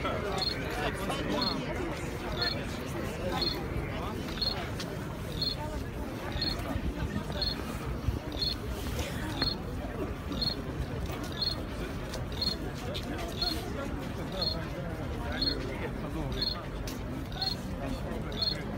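Crowd of marchers walking and talking in a steady murmur of many voices and footsteps, with a short high electronic beep repeating evenly about once a second.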